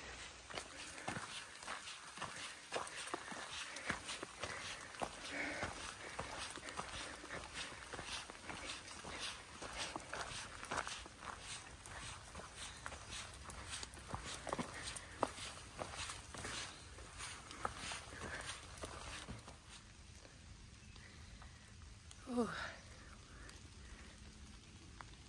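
A hiker's footsteps on a dirt trail at a steady walking pace, about one or two steps a second. The steps stop about four-fifths of the way through, and a brief pitched glide is heard a couple of seconds before the end.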